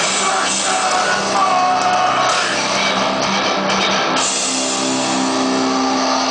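Live rock band playing loud and steady: electric guitars over a drum kit, recorded from the crowd.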